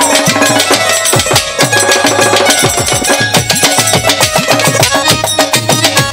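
Instrumental break in live Bangladeshi baul folk music: fast, dense drumming and percussion over a sustained melodic accompaniment.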